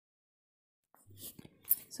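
Dead silence for about a second, then faint breathy mouth sounds as the narrator's voice starts, ending on a spoken "So".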